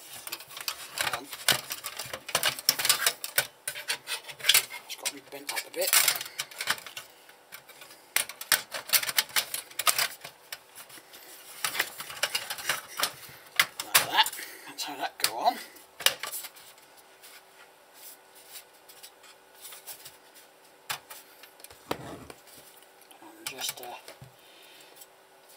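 Thin sheet-steel panels of a satellite receiver's case being handled and fitted back together, with a run of sharp metallic clicks and clatters that thin out to a few scattered clicks after about sixteen seconds.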